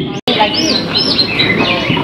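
Caged songbirds chirping and whistling in a string of quick rising-and-falling notes, over the murmur of voices. The sound drops out for an instant just after the start.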